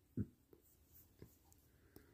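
Near silence with a short, soft low thump just after the start and a few faint clicks spread through the rest.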